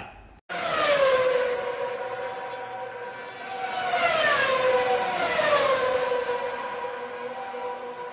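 Synthesized end-screen outro sound effect, siren-like. It starts suddenly about half a second in, and its tone glides down in pitch three times over a steady held note and a hissing whoosh.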